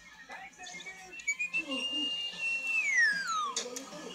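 Cartoon soundtrack heard from a TV's speaker in the room: a high whistle-like tone held for about a second and a half, then sliding steeply down in pitch, over background music.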